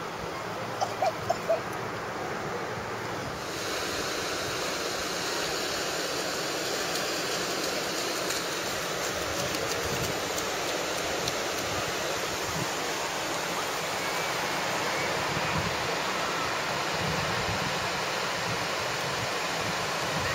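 Ocean surf washing onto a sandy beach, a steady rush that turns brighter and a little louder about three and a half seconds in.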